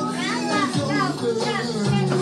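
Children's voices and chatter over background music.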